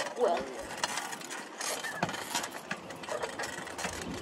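Child's bicycle rolling along, rattling with many small clicks and ticks, heard from a camera mounted on the handlebars. A child's brief voice sound comes just after the start.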